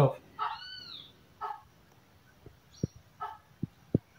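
Great kiskadee fledgling calling for its parent: one arched call that rises and falls, then two shorter calls, with a few faint low knocks in the second half.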